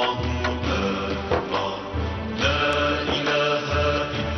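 Title theme music with sustained tones over a regular low pulse.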